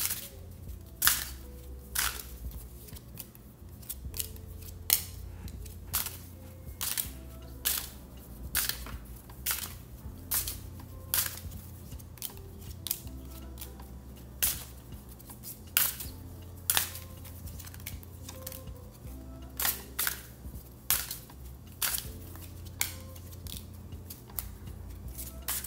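Tarot cards being pulled from the deck and laid down on a wooden table, a sharp click or snap every second or so, over soft background music.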